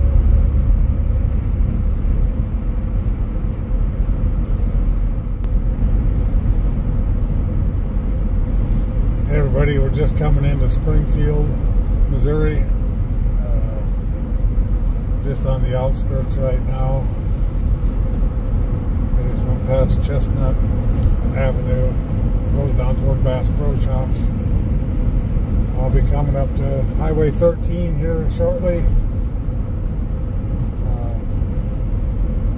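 Steady road and engine noise heard from inside a car cruising at highway speed, a continuous low rumble. A voice talks intermittently over it from about a third of the way in.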